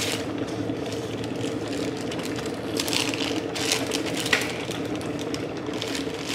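Electric kettle heating toward the boil, a steady rumble and hiss. Over it come brief rustles and taps of a cardboard box being handled, with one sharp tap about four seconds in.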